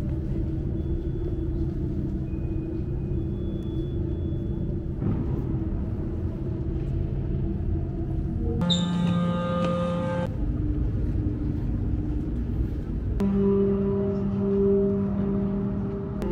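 Deep, sustained ambient drone music from an art installation's sound system, with a rumbling low end and chords that shift every few seconds. A bright layer of higher tones sounds for about a second and a half some nine seconds in, and the low tones swell near the end.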